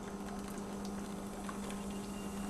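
Faint trickle of hot water pouring in a thin stream from a saucepan into a shallow pan of dissolving cherry gelatin, over a steady low hum.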